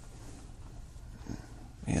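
A pause in a man's speech: a steady low hum of room noise, with his voice starting again right at the end.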